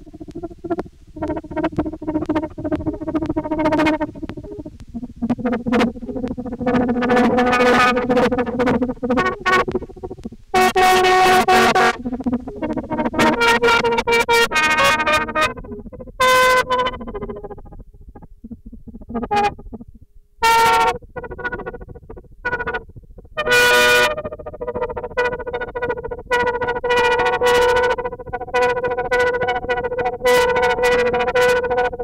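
1953 Fender Dual Pro 8 lap steel guitar played through an amp into an ARP 2600 clone synthesizer, so its notes come out as synthesizer-like tones. Sustained pitched notes and chords alternate with sudden sharp bursts and short gaps, with a quieter lull a little past the middle.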